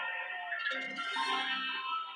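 Country-pop song with guitar playing from the car stereo, heard inside the car cabin.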